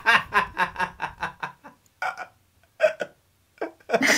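Hearty laughter: a fast run of short laugh pulses for the first second and a half, then a few shorter, separate bursts of laughing.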